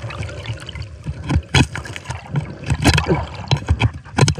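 Water heard through an underwater microphone, a bubbling, moving-water wash, with irregular sharp clicks and knocks against rock, loudest about a second and a half in and again near three seconds.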